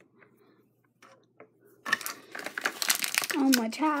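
Plastic toy packaging crinkling loudly as it is handled and gathered up, starting about two seconds in after a few faint clicks.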